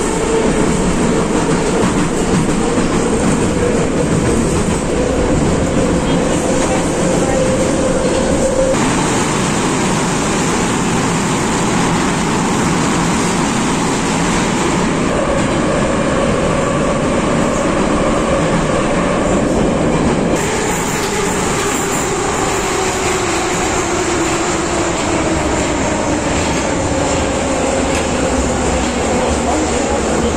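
Interior running noise of an 81-717.5M metro car: the rumble of wheels on rail, with the whine of the traction motors. The whine climbs slowly during the first part, then falls steadily over the last third as the train slows into the station.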